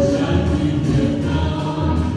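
Vietnamese song performed live: voices singing together in chorus over instrumental accompaniment with a strong bass.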